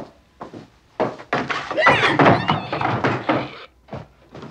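Film soundtrack: a sharp thud at the start, then from about a second in a loud stretch of shrill, wavering, animal-like squealing mixed with rattling noise, which stops shortly before the end.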